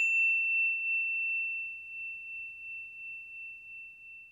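A single high, clear bell-like ding ringing out and slowly fading, with a gentle pulsing wobble in its loudness; it is nearly gone by the end.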